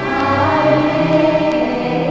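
Music: a choir singing held chords, the low notes moving in slow steps.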